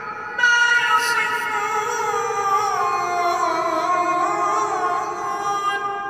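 A single voice chanting a long, ornamented religious phrase in the Islamic style, echoing through a large domed hall. The phrase begins about half a second in and slowly falls in pitch, fading near the end.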